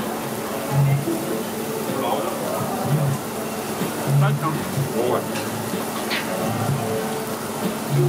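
Pork sizzling on a tabletop barbecue grill, over a background of indistinct voices and music.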